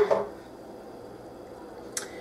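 Quiet, steady kitchen background with no distinct activity, broken by one short, sharp click near the end.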